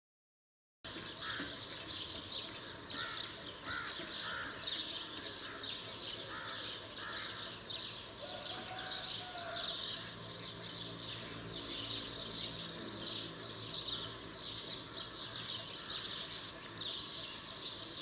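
A dense chorus of many small birds chirping continuously, starting just under a second in, with a few lower repeated calls among them in the first half.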